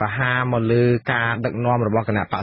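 Speech only: a man talking steadily in Khmer.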